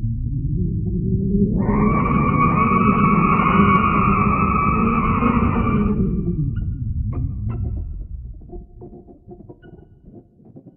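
Sonification of Hubble's Helix Nebula image: a low droning rumble swells, and higher sustained tones join about a second and a half in. The higher tones drop out around six seconds, as the scan line passes the nebula's blue, oxygen-rich centre, which is mapped to high pitch. The drone then fades, leaving faint scattered tones near the end.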